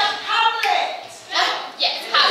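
Speech: a raised, theatrical speaking voice, with two short hissy sounds in the second half; the words are not made out.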